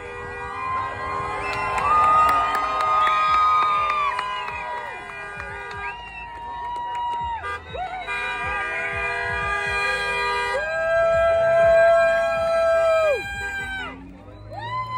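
Car horns honking from passing traffic: several long held blasts at different pitches overlapping and starting and stopping, the strongest near the end, over a cheering crowd.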